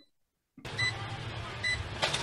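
Playback of a recorded video's soundtrack cutting in abruptly about half a second in: a harsh, noisy recording with a low hum and two short high beeps about a second apart.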